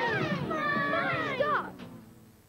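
A jumble of many high cartoon voices squealing and jabbering over one another in wordless, cat-like gibberish, breaking off about a second and a half in and fading away.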